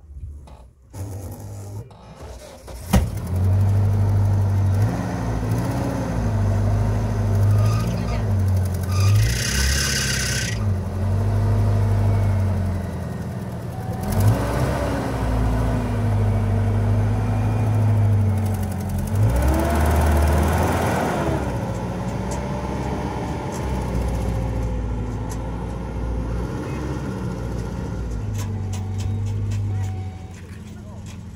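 Zamyad pickup truck engine starting about three seconds in, then running with several rises in revs as the truck pulls away.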